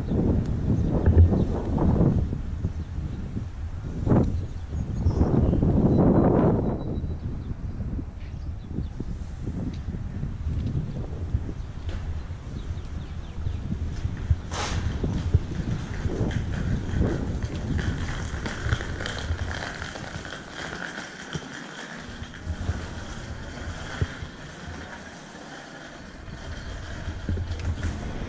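Wind buffeting the camera microphone outdoors: a low rumble that swells in strong gusts during the first several seconds, then settles to a lower, steadier rumble, with a faint steady hum in the second half.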